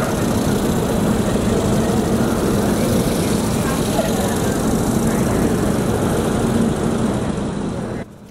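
Steady background of a large hall: a low steady hum under a wash of indistinct voices.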